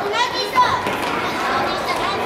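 Young children shouting and calling out as they play, with one high child's voice in the first half-second over steady voices in a large, echoing gymnasium.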